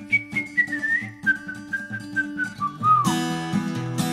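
A whistled melody, one clear tone stepping downward in pitch, over picked acoustic guitar. About three seconds in the whistle ends with a short bend and the guitar breaks into louder, fuller strumming.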